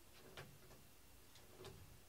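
Near silence with two faint light taps, each a short click with a soft thud, about half a second in and near the end.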